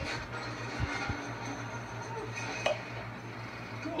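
A steady low hum fills a quiet room, with a few faint clicks and one sharper click about two-thirds of the way through.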